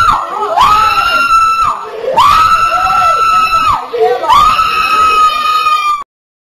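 A woman's voice screaming into a microphone in three long, very high-pitched held cries, each over a second long. The screams are loud and harsh, and the sound cuts off abruptly at the end.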